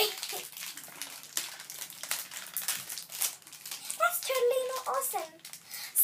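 Crinkling of a plastic blind-bag packet being handled, in quick, irregular crackles.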